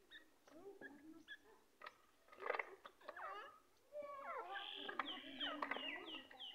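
Female francolin (teetar) calling: a string of squeaky, gliding chirps and twitters that turns busier about four seconds in, ending with a quick run of short falling notes.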